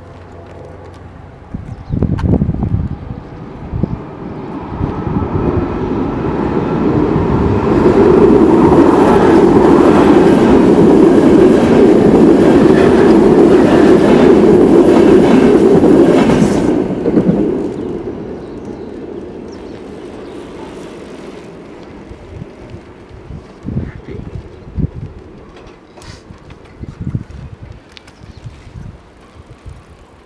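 A CityElefant (ČD class 471) double-deck electric multiple unit passing close by, growing louder over several seconds, staying at its loudest for about eight seconds and then fading away as it goes. A few short knocks follow near the end.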